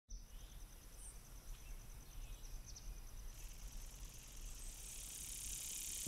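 Quiet woodland ambience: an insect trilling in a fast, even pulse, a few short bird chirps in the first half, and a high insect buzz that swells about halfway through, over a low rumble.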